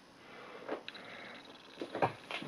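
Faint handling noise with a few light clicks as fingers turn a small metal charm.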